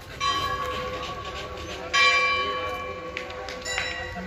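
Temple bell struck and ringing: two loud strikes about a second and a half apart, each ringing on with a clear tone, then a couple of lighter strikes near the end.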